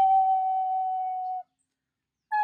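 Wooden vertical flute holding one long, steady note that cuts off about three quarters of the way through.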